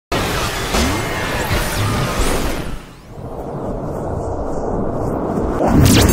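Animated intro sting: music with whooshing sweeps for about three seconds, a brief drop, then a rising swell that ends in a sharp hit near the end.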